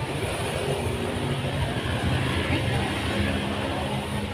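Motor scooter engine running steadily, a low even note with no revving.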